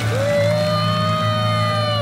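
An animated fish character's long drawn-out cry as it is pulled out of the water on a fishing line. The cry rises in pitch at the start, holds steady and drops away at the end, over background music.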